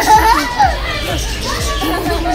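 Children's voices and chatter, with music playing underneath.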